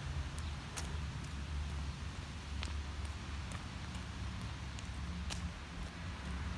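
Low rumble of handling and movement noise on a handheld phone's microphone while walking, with a few faint, scattered clicks.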